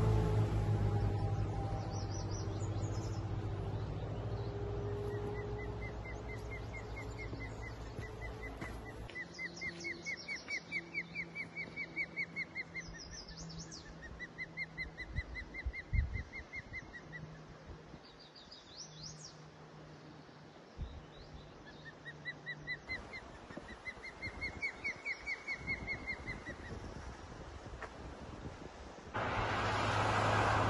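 Runs of rapid, sharp whistled chirps, each run a couple of seconds long and rising then falling in pitch, repeated again and again: an osprey calling from its nest on a pole. Over the first several seconds a passing vehicle's hum falls in pitch and fades away.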